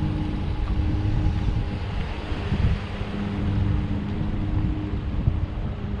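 Cummins turbodiesel inline-six in a Ram 2500 pickup running at low speed, a steady low drone.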